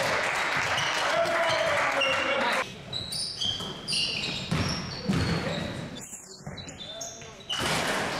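A basketball being dribbled on a hardwood sports-hall floor, with players' shouts and calls over it for the first couple of seconds. After that come sharp, sparser bounces and short high squeaks from sneakers on the floor.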